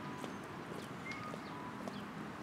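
Eurasian tree sparrow pecking seed from an open hand: soft, irregular little taps of its beak on the grain and palm. A faint short chirp comes about a second in.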